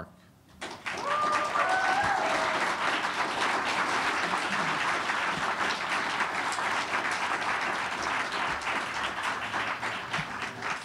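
Audience applauding, starting about a second in and going on steadily, with a few voices calling out in rising cheers at the start.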